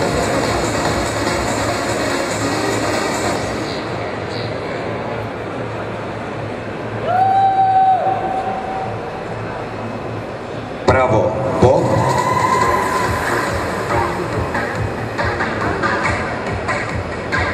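Background music and crowd din in a large hall, with drawn-out shouts from the audience: one held call about seven seconds in, and a louder shout about eleven seconds in that stretches into another long call.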